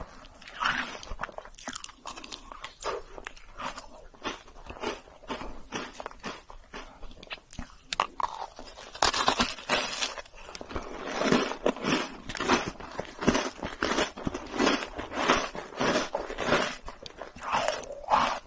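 Close-miked biting and chewing of a cookie sandwich with a marshmallow filling, in a steady run of repeated chews. The chewing grows louder about nine seconds in, after a fresh bite.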